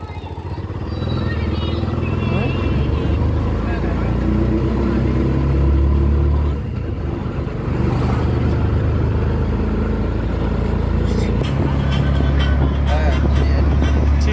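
Engine of a road vehicle heard from inside while riding, a steady low drone with road and wind noise. It eases off briefly about six and a half seconds in, then picks up again.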